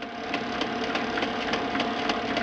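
Film projector running: a steady mechanical whir and hum with a regular clatter of about four clicks a second.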